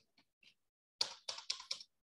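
Computer keyboard being typed on: a few faint taps, then a quick run of about five keystrokes about a second in.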